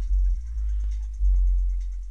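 Music playing through two DB Drive Platinum series 15-inch subwoofers, deep bass notes hitting at the start and again about a second later, then fading. The bass is turned down on the head unit's equalizer.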